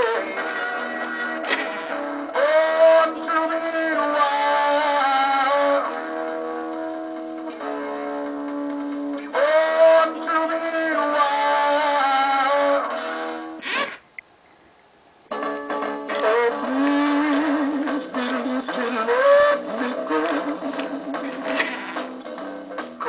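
Rocky Rainbow Trout singing-fish toy playing a rock song through its small speaker: guitar with a synthetic-sounding male singing voice. About 14 s in the song ends with a click and a second or so of silence, then a second, slower song with a wavering vocal starts.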